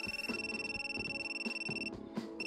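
Cordless telephone ringing: one long electronic ring on a single high tone that cuts off just before the end, over soft background music.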